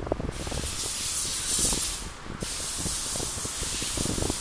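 A loud high-pitched hiss that starts shortly in, drops out briefly about halfway through and comes back, over irregular low knocks.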